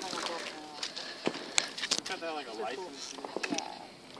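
Voices of people talking quietly in the background, with a few light clicks around the middle; no firework bang is heard.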